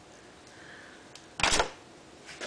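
A short, loud clatter close to the microphone about one and a half seconds in, just after a faint click: an object being handled or set down near the camera.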